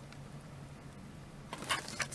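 Quiet room with a faint steady low hum; in the last half second a few short clicks and rustles as a small cardboard product box is handled in the hands.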